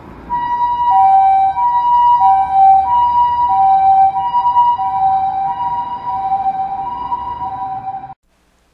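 Japanese-style ambulance two-tone siren, a high and a low note alternating about every 0.6 s over a low vehicle rumble. It grows louder over the first second, eases slightly toward the end and cuts off abruptly.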